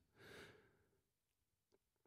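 Near silence, with one faint short breath at the microphone soon after the start.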